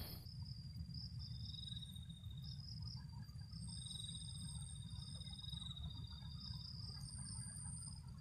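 Faint chorus of trilling insects: several high-pitched trills at different pitches, each held for about a second or two and repeating, over a low steady rumble.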